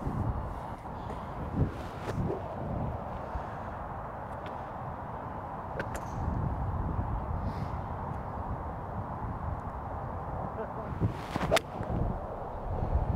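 A golf iron striking a ball off the turf: one sharp crack just before the end, the loudest sound here. It sits over a steady low background noise, with a couple of fainter clicks earlier on.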